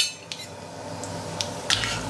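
A spoon clicking and scraping a few times against a stainless-steel kadhai, over a faint sizzle of cumin seeds frying in hot oil.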